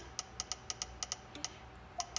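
iPad VoiceOver earcons: about ten short soft clicks ("thunk, thunk, thunks") at uneven spacing as a finger slides across home-screen icons, one click each time the finger lands on a new item. VoiceOver speech is switched off, so these clicks are all that sounds.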